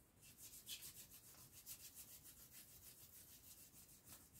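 Faint, quick back-and-forth rubbing of a sponge brushing silver acrylic paint over a latex-coated foam piece, several short scratchy strokes a second, to bring out the latex surface texture.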